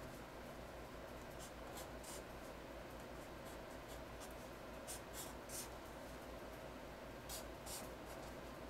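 Black felt-tip permanent marker scratching on paper in short, faint strokes as letter outlines are traced, over a steady low room hum.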